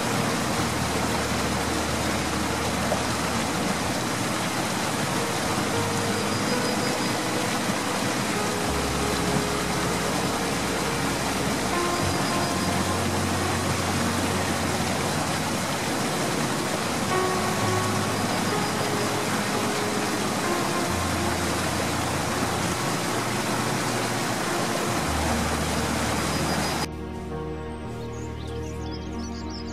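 Steady rushing of a mountain stream under background music with slow, sustained bass and keyboard-like notes. The water sound cuts off about a second before the end, leaving the music alone.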